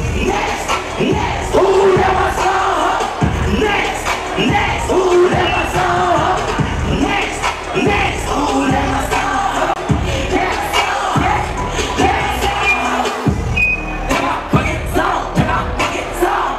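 Live hip hop music played loud through a venue's sound system, with a regular bass beat, and a crowd shouting and cheering over it.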